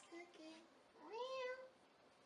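Faint, short vocal call about a second in, rising in pitch and then held for about half a second, after two softer, briefer sounds.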